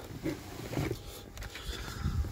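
Low, irregular rumbling and rustling handling noise from a hand-held phone being moved around.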